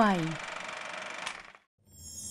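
A voice-over finishes the last word of a Thai broadcast content-rating notice over a steady hiss-like background bed. The bed cuts off abruptly to a short silence near the end, just before the programme's intro.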